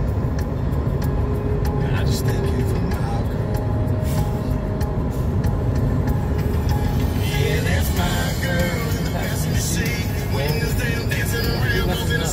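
Steady road and engine rumble inside a moving car's cabin, with music playing. From about seven seconds in, singing comes over it.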